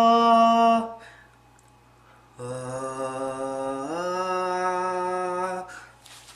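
A man's voice holding sung notes into a microphone as a test sound for a loudness meter: a steady held note that stops about a second in, then after a short pause a second held note that slides up to a higher pitch partway through and stops just before the end.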